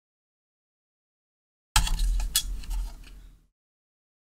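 A brief burst of handling noise on the workbench, starting a little under halfway in: a clatter of light clinks and knocks over a low rumble, lasting about a second and a half and then cutting off.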